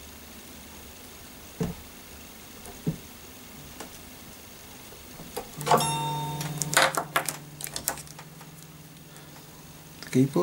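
Open strings of a Taylor 214ce acoustic guitar sounded once about halfway through, ringing and slowly fading. A few light clicks and knocks of handling come before and over the ringing.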